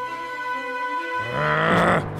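Background music with held tones, then just over a second in a loud, rough monster-style roar begins, rising in pitch.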